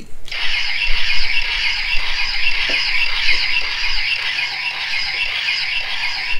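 Battery-powered toy phaser firing its electronic sound effect: a loud, steady, high-pitched warbling tone with a rapid pulse, cutting off suddenly near the end.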